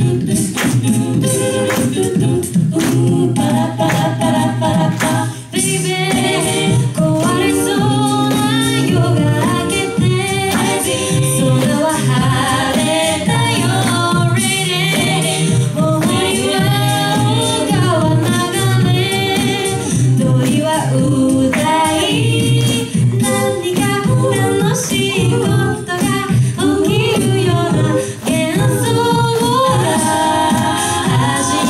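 Mixed-voice a cappella group of six singing through handheld microphones: a sung bass line and held backing harmonies under a lead vocal melody, with a steady percussive beat throughout.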